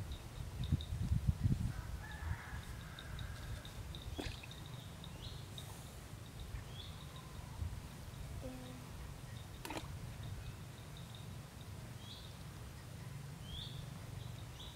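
Outdoor ambience: birds calling in short chirps now and then over a steady low rumble, with two sharp clicks, one about four seconds in and one near ten seconds.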